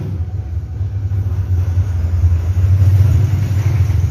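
A loud, steady low rumble with nothing else standing out over it.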